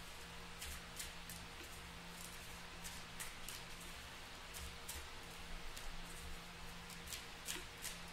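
A tarot deck shuffled by hand: soft, irregular flicks and slides of cards, several a second, over a faint steady hum.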